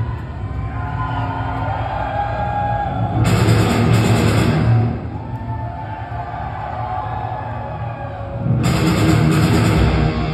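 A heavy metal band playing live, heard from the audience in a large hall, with electric guitars and drums. Louder full-band stretches come about three seconds in and again near the end, with quieter stretches between them led by a guitar melody.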